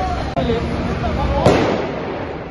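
A single loud explosive bang about one and a half seconds in, ringing on briefly after the hit, over people's voices.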